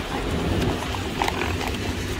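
Street ambience: a steady low rumble of traffic and a vehicle engine, with scattered short clicking footsteps of people walking on the pavement.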